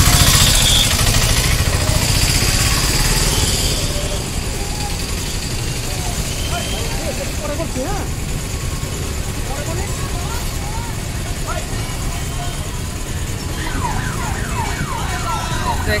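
Outdoor street crowd noise: a steady rumble of traffic with scattered distant voices, louder for the first few seconds.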